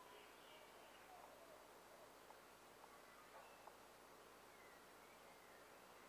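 Near silence: faint room hiss with a few faint ticks and a couple of faint high chirps.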